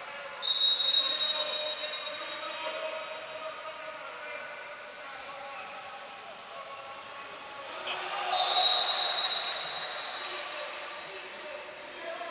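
Two long, shrill referee's whistle blasts in a water polo match, one about half a second in and another about eight seconds in. Each rings on and dies away slowly in the echoing pool hall, over faint steady background noise.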